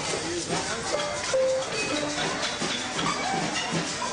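Children's percussion clattering and shaking, a dense run of rattles and taps, over children's chatter and a few short held notes.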